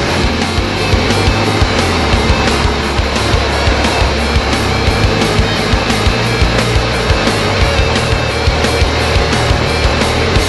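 Loud rock music with a steady drum beat and heavy bass.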